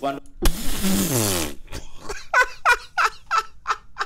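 A man laughing: a long breathy exhale with his voice sliding down in pitch, then a quick run of short, high-pitched laughs, about four a second.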